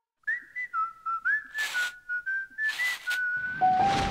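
A short whistled tune: a single clear note sliding and stepping between pitches, broken twice by a brief hissing swish. Near the end it moves into a few lower notes that climb step by step.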